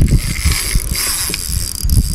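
Spinning fishing reel clicking in a fast, continuous run under the pull of a large hooked fish, its drag just loosened.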